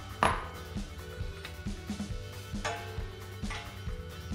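Steel impact sockets clinking against each other a few times with a short metallic ring, the first clink the loudest, over steady background music.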